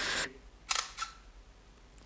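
Panasonic Lumix G1 mirrorless camera's shutter firing: two short mechanical clicks about a third of a second apart, the first louder.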